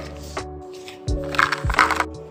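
Background music over raisins being shaken out of a small cardboard box into a plastic container: a few soft knocks and a brief rustle about a second and a half in.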